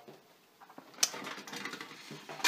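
Hinged metal pencil tin being opened: a sharp click about a second in, then faint small clicks.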